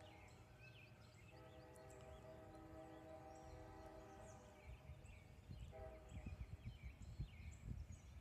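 Faint outdoor ambience: scattered distant bird chirps and a faint steady hum, with wind or handling rumble on the microphone over the last few seconds.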